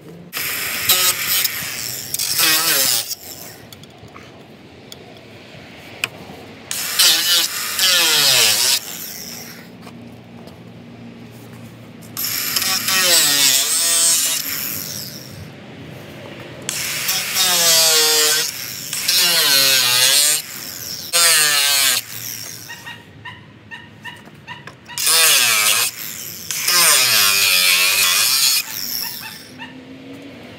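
Angle grinder with a cut-off wheel cutting into the headlight mounting panel of a Ford Super Duty's front end, in about five bursts of one to four seconds. The motor's pitch slides up and down through each cut, with quieter spells between them.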